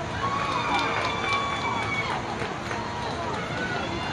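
Several voices chanting a sing-song softball cheer, with notes held for a second or more, and a few sharp claps about a second in.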